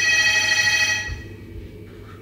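A telephone ringing: one electronic ring with several stacked tones, lasting about a second before it stops.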